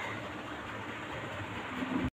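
Steady background noise, an even hiss and hum with no distinct events.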